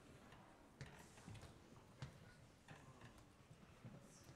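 Near silence in a concert hall: quiet room tone with about five faint, scattered clicks and taps, the loudest about two seconds in.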